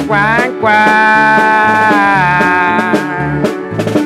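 Norteño band playing an instrumental passage: button accordion lead over bass, guitar and drums with a steady beat. A long note is held for about two seconds early in the passage.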